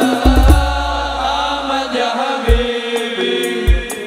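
Male voices sing an Arabic sholawat together over a koplo-style band, with deep booming drum hits underneath. The singing drops away about two and a half seconds in, leaving a held instrumental note and further drum hits.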